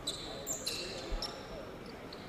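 Faint basketball-gym sound: a few short, high squeaks of sneakers on the court over low hall noise.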